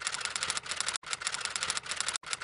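Typewriter key-clatter sound effect: a fast, even run of keystroke clicks, about ten a second, with a brief break about halfway through, played as caption text types onto the screen.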